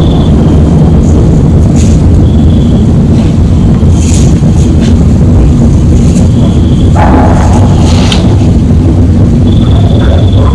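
Boosted outdoor field recording played back: a loud, steady low rumble throughout, with a few short high chirps and several sharp clicks, the biggest a noisy burst about seven seconds in.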